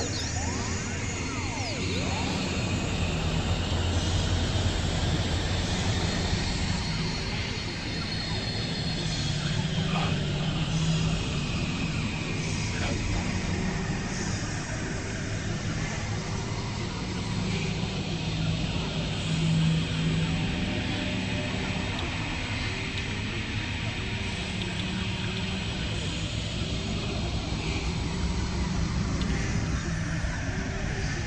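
Dense experimental noise collage of several overlapping music tracks, heavily processed into a steady droning wash, with slow sweeping rises and falls in the upper range over held low tones.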